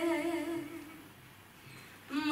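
Unaccompanied young female voice singing a Romanian doină, holding a wavering, ornamented note that fades out about a second in.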